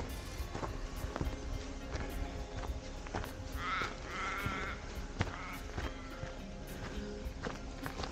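Footsteps on a dirt forest track over background music, with a short warbling call near the middle.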